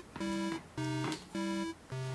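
Background music: a simple electronic melody of short, steady notes, about two a second, with brief gaps between them.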